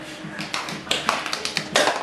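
A quick run of sharp taps and clicks starting about a second in, ending with a louder knock near the end.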